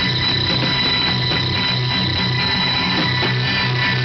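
A band's droning intro: a high ringing tone held steady over a fast, even ticking pulse of about four beats a second and a low throbbing rhythm underneath.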